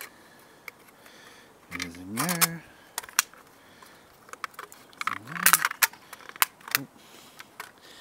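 Small hard plastic parts of a broken toy bus clicking and clinking in the hands as they are fitted back together, with two busier bursts of clicks about two seconds in and midway. A man's voice gives a few short hums in between.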